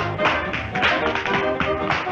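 Tap shoes striking a hard floor in a quick, irregular run of taps during a tap dance, over orchestral dance music.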